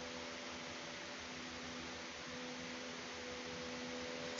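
Quiet room tone: a steady hiss with a faint, steady low hum.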